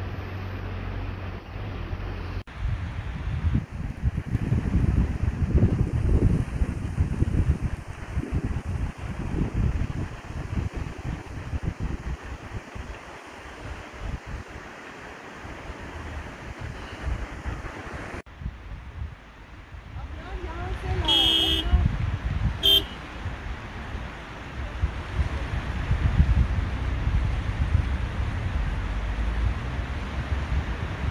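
Rough outdoor field audio: wind buffeting the microphone and indistinct voices, with abrupt jumps in the sound where the footage is cut. A little past the middle a horn sounds twice, one longer blast then a short one.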